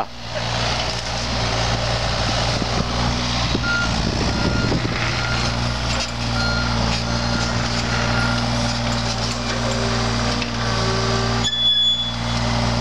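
John Deere 35G compact excavator working: its diesel engine runs steadily while a warning alarm sounds in short, evenly spaced beeps through the middle. Around four seconds in there is a rough rumble of the bucket working the dirt, and a brief rising hydraulic whine near the end.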